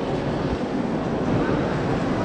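Steady, indistinct murmur of a large crowd in a gallery hall, a dense wash of many voices with no single words standing out.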